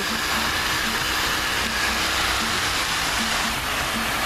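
Fountain jet spraying upward and falling back into its stone basin: a steady, even hiss of splashing water.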